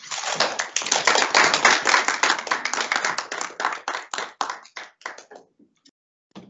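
Small audience applauding: dense clapping that thins to a few last claps and stops a little before six seconds in.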